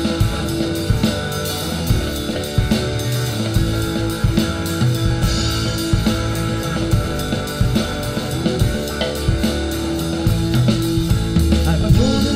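Live rock band playing an instrumental passage: hollow-body electric guitar, electric bass and drum kit together at a steady beat.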